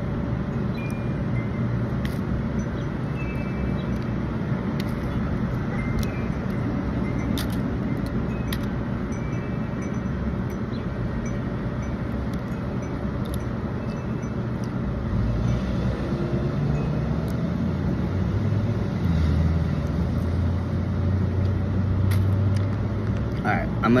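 Steady road-traffic hum, with a vehicle's low rumble swelling in the second half, and scattered small clicks and crackles of crab shell being picked apart by hand.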